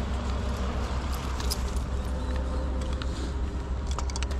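Steady low outdoor rumble on the camera's microphone, with a few faint ticks and no clear event standing out.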